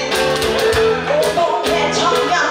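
Live band playing a song: acoustic and electric guitars strummed to a steady beat of about two strokes a second, with a woman singing into a microphone.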